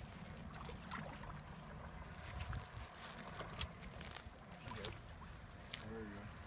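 Faint water sloshing and small splashes as a large black drum is moved back and forth in shallow water to revive it before release, over a low wind rumble on the microphone.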